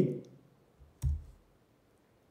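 A single short click about a second in: a key press on a computer keyboard, the Command-K shortcut being typed.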